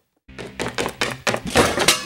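A rapid run of thuds and knocks from a scuffle, starting a moment in and getting louder toward the end.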